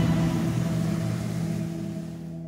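Motorboat engine running at speed with a steady low drone and rushing noise, fading away gradually.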